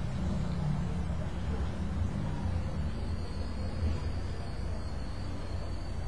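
Steady low background rumble with no speech, with a faint thin high whine joining about halfway through.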